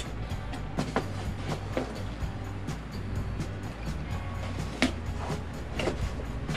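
Background music with a steady low bass, over the scattered clicks and crinkles of a cardboard box being opened and its paper packing handled.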